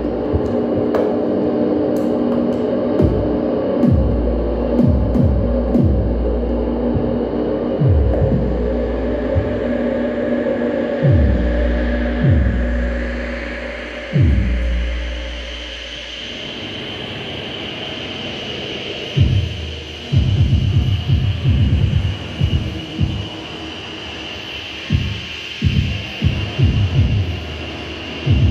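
Improvised electronic music from a patch-cable synthesizer with a drum kit. Deep bass throbs with repeated downward pitch swoops give way to a steady high tone, and a fast flurry of short hits comes in during the second half.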